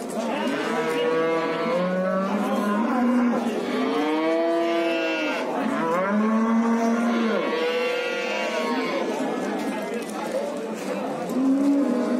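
Cattle mooing: a run of long, overlapping calls one after another, each rising and falling in pitch.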